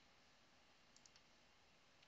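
Near silence: room tone, with a couple of faint computer-mouse clicks about a second in.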